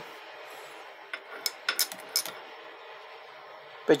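Teeth of a 60-minus-2 trigger wheel ticking against a metal pointer clamped in a vice as the wheel on the crank pulley is turned by hand: a handful of light metallic clicks, starting about a second in and over within a second or so. Where the teeth touch the pointer shows where the wheel runs off-centre.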